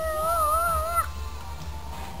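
A toy trumpet being blown, sounding one slightly wavering note that stops abruptly about a second in.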